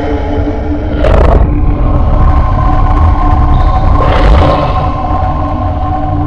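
Sustained dramatic background music chords over a heavy low rumble, with two loud whooshing swells, one about a second in and one about four seconds in.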